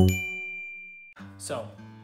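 The last bell-like chime of an intro jingle rings out and fades over about a second. After an abrupt cut, a quieter voice-like sound begins.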